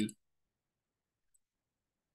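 A man's voice finishes a word right at the start, then dead silence, broken only by one faint, tiny click about a second and a half in.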